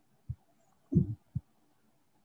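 Three short, dull, low thumps, the loudest about a second in, picked up through a video-call microphone over a faint steady hum.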